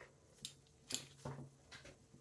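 Faint clicks and light clinks from oval carabiners and rope being turned over in the hands, about five small ticks spread across two seconds.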